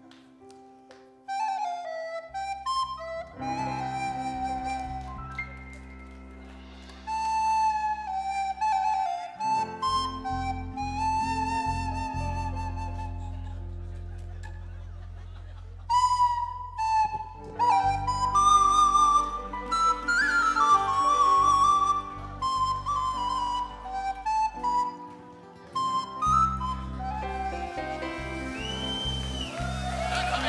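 A recorder playing a melody, amplified through a stage microphone, over long held low chords from the band.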